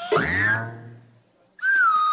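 Cartoon-style sound effects in a performance's playback mix: a sudden swooping sound that drops steeply in pitch and dies away within about a second, then, after a brief gap, a held whistle-like tone that begins near the end.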